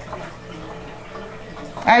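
A low-water-level reptile filter's waterfall outlet pouring steadily into shallow tank water. The water level sits below the spout, so the falling water is heard dripping in. A voice starts at the very end.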